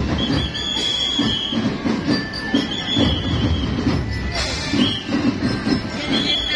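Parade street noise from a crowd, with a high, steady whistle sounding in long blasts, the longest about a second in and another midway, and a short one near the end. Music is faintly mixed in.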